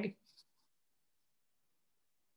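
A woman's voice finishing a short spoken phrase, then dead silence.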